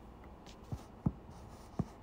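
Hands handling the filming phone, giving three dull thumps against it, the middle one the loudest, with a faint rustle between them.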